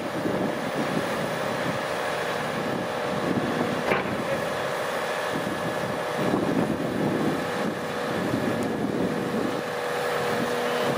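Heavy diesel engine of a tracked excavator running steadily while it holds a load over the trailer, with a steady whine over the rumble. A single sharp clank comes about four seconds in.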